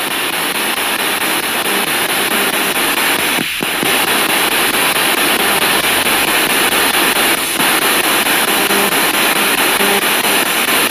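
Spirit box sweeping through radio frequencies: a steady rush of hiss and static, chopped into brief scraps of broadcast sound, with a short dip about three and a half seconds in.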